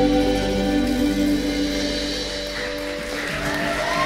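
A live acoustic band's closing chord, with acoustic guitars and mandolin held and ringing out, slowly fading over about three seconds.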